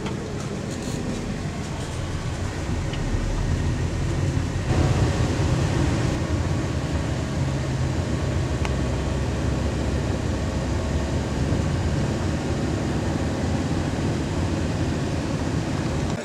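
Car driving, heard from inside the cabin: a steady engine and road rumble that gets a little louder about five seconds in.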